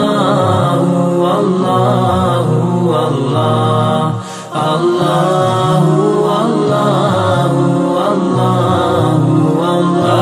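Devotional chant music: repeated sung vocals of the zikr kind, chanting "Allahu", over a sustained accompaniment. It dips briefly about four seconds in.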